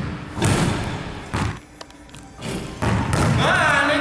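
Several heavy thuds of a basketball and sneakers on a hardwood gym floor during a dunk run-up, with a quieter stretch around the middle. Near the end a wavering pitched sound comes in.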